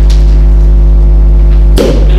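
Loud, steady electrical mains hum, a low buzz at about 50 Hz with its overtones, carried by the microphone and PA line, with a brief sharp burst near the end.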